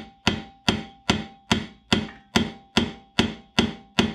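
Light, evenly spaced taps, about two or three a second, on a socket extension set through the spark plug hole onto the seized piston of a Ryobi SS30 string trimmer's small two-stroke engine, struck to try to knock the stuck piston free.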